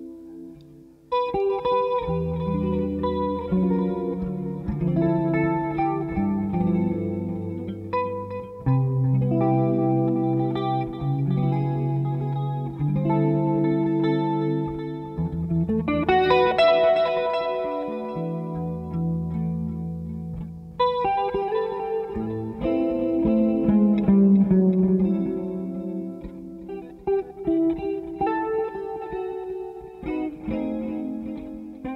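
Live jazz on a hollow-body electric guitar, playing chords and melody lines over deep electric bass guitar notes. The playing is soft for the first second, then comes back in full.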